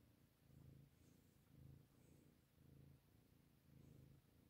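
A domestic cat purring faintly, the low purr swelling and fading about once a second.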